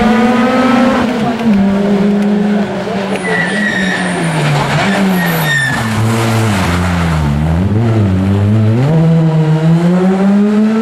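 Rally car engine running at high revs on a tarmac stage, with a brief tyre squeal in the middle. The revs drop a few seconds later as the car slows for a tight corner, then rise again near the end as it accelerates away.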